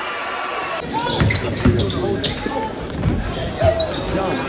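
Indoor basketball game: a steady murmur of voices gives way just under a second in to live play, with a basketball bouncing several times on a hardwood court, sneakers squeaking and players' voices.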